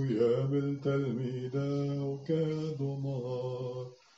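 A priest's solo male voice chanting the Maronite consecration in Syriac, the words over the cup, in a slow line of held notes at a low, fairly level pitch with short breaks between them, stopping just before the end.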